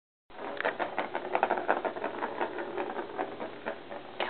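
Plastic ball rolling and rattling around the circular plastic track of a Star Chaser Turbo cat toy, a rapid, irregular clatter of clicks.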